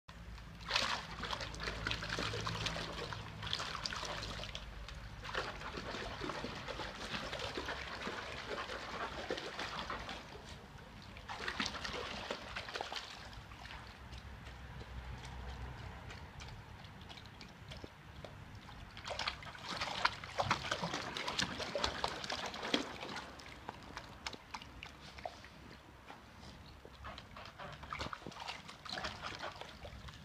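Welsh terrier splashing and sloshing water in a plastic tub in irregular bursts of a few seconds, with quieter spells between.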